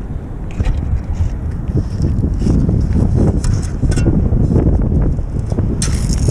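Wind buffeting the microphone, a loud, steady low rumble, with a few short scrapes and crunches from footsteps on pebbly beach sand now and then.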